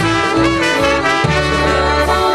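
Two trumpets playing the melody of a waltz live, with a polka band's bass notes underneath.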